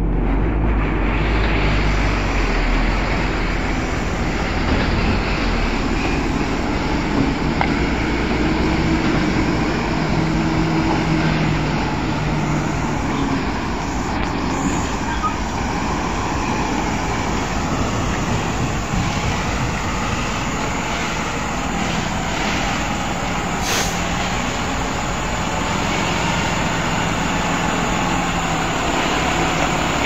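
Diesel engine of a Volvo heavy truck running under load as it slowly hauls a giant excavator on a trailer, a steady low rumble with a brief sharp click near the end.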